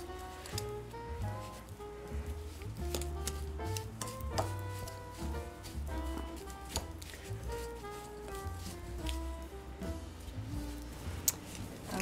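Background music: a melody over a steady bass line. Irregular small clicks and scrapes run under it, from a fork working butter, sugar and almond paste together in a glass bowl.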